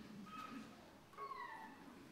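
Two short, faint, high-pitched vocal sounds, each falling in pitch, over a low room hum.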